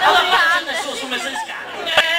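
Chatter of several voices talking over one another with no clear words, fading toward the end.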